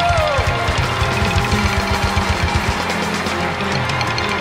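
Loud luk thung band music with a fast, driving drum beat; a held note slides down in the first half-second.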